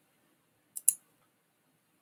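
Computer mouse clicked: two quick, sharp clicks close together just before a second in.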